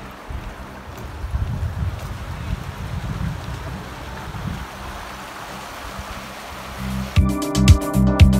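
Creek water running steadily, with a low rumble in the first few seconds. About seven seconds in, electronic music with a strong steady beat starts, loud enough to cover it.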